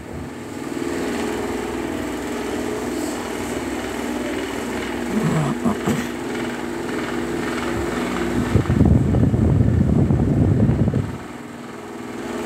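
Electric hair clippers running with a steady buzz, louder for about two seconds near the end.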